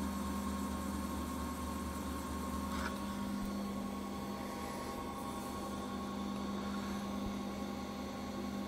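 The 24-volt gear motor of a slow-speed carbide grinder running steadily, a low, even hum with a faint higher whine, as the diamond lap turns at about 240 rpm.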